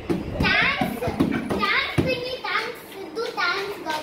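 Several children talking and exclaiming excitedly over one another, with one short sharp tap about halfway through.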